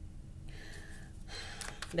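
A person's quick, audible intake of breath about half a second in, followed by faint rustling, before speech starts again at the very end.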